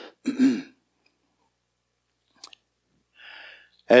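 A man clears his throat once, briefly. A single small click follows a couple of seconds later.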